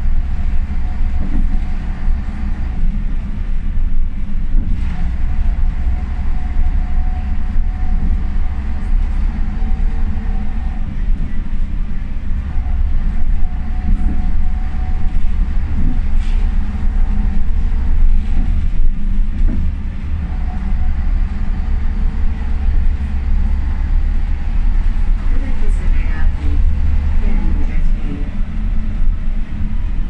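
Ikarus 280 articulated bus running under way, heard from inside the passenger cabin: a heavy low rumble with whining tones from the ZF gearbox and the rear axle that come and go, and a few rising whines near the end. Short knocks and rattles from the body now and then.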